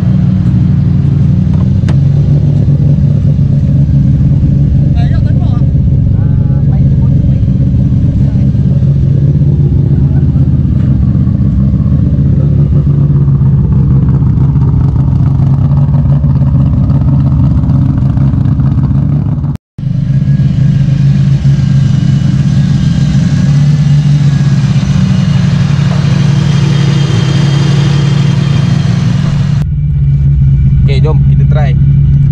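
Nissan Cefiro A31's swapped turbocharged RB25 straight-six idling steadily. The sound cuts out for a split second about two-thirds of the way in.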